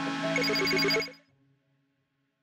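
Short electronic outro jingle with held tones and rapid repeated high tones, fading out quickly about a second in.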